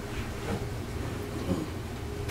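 Steady low room rumble in a large hall, with a few faint knocks, the clearest about a second and a half in.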